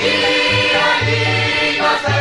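Spanish Christmas carol (villancico) music: a choir singing held notes over instrumental backing with a repeating bass line.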